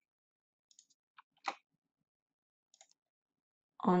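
A few short, soft clicks spaced apart, the loudest about one and a half seconds in, with near silence between them.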